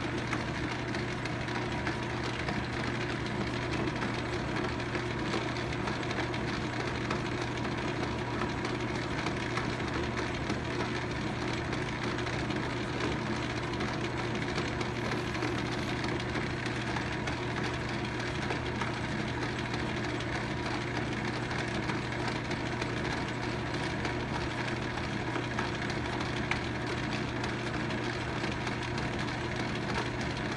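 Logan 10-inch metal lathe running steadily at reduced speed, its motor and gear drive humming evenly while the spindle turns an aluminum workpiece for an internal thread-cutting pass with a boring bar. One brief click sounds late on.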